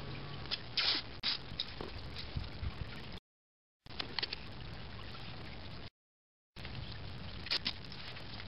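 Masking tape being pulled off its roll and torn into strips, heard as a few short rasps over a steady background hum. The sound cuts out completely twice, for about half a second each.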